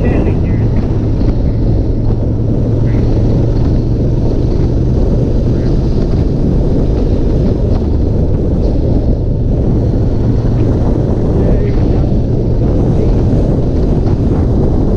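Ducati Monster S2R 1000's air-cooled L-twin engine running at a steady pitch while riding, under heavy wind noise on the microphone.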